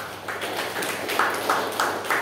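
Hands clapping in a steady rhythm, about three claps a second, starting suddenly and ringing briefly in a large hall after each clap.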